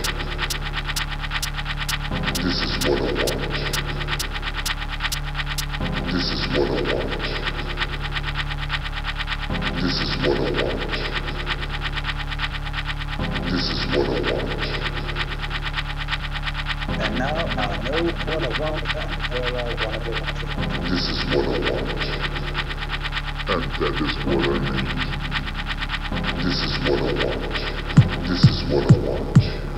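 Hard techno track with a steady fast beat and constant deep bass. A mid-range sound with a bright edge repeats in a loop about every four seconds.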